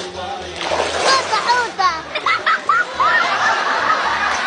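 Water splashing, with a series of short voiced calls over a steady background music track.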